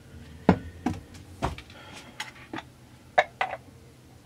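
Scattered light clicks and knocks, about seven or eight in all, the sharpest about half a second in and just after three seconds in, as a homemade degree wheel of printed board with a threaded air fitting at its centre is handled and set against the crankshaft end of a bare chainsaw crankcase.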